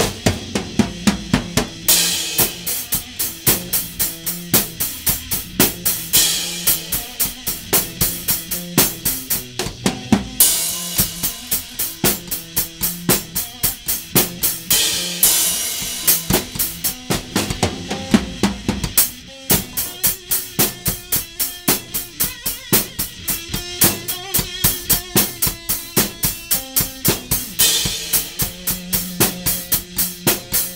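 A drum kit and an electric guitar through an amp jamming together. The drums keep a steady beat of kick and snare hits, with crash-cymbal washes every few seconds, over held guitar notes.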